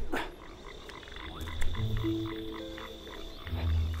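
Night ambience of frogs croaking in quick repeated calls over a steady high insect-like tone, with soft sustained low music notes beneath. A short falling whoosh opens it and is the loudest sound.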